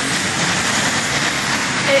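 Steady, loud street traffic noise with no breaks, picked up on a phone's microphone.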